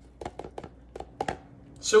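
A quick run of light clicking taps as the spice grinder's lid knocks against a plastic container, shaking ground ghost pepper powder out.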